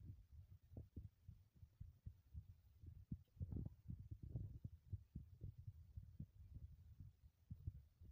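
Faint, irregular low thumps and rumble from a phone being carried by someone walking: footfalls and handling noise on the microphone.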